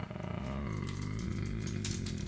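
Computer keyboard keys clicking in short scattered runs as code is typed, over a low, uneven hum.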